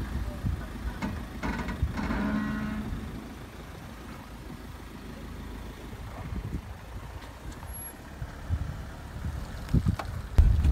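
Land Rover engine running at a low, steady crawl over a rutted, muddy off-road track. A short voice-like hum comes about two seconds in.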